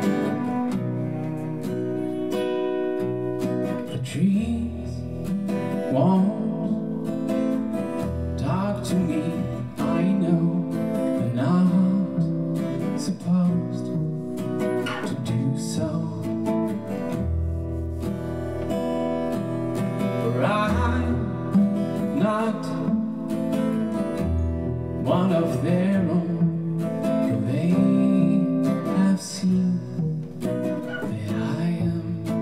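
Acoustic guitar and cello playing together, with the guitar strumming chords over low held cello notes that change every few seconds.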